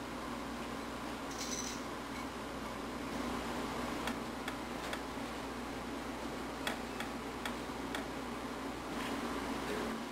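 Steady room noise, a low hiss with a faint hum, with a handful of faint ticks in the second half.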